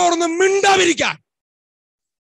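A man speaking loudly and emphatically into a close microphone, his voice raised and high-pitched, stopping a little over a second in.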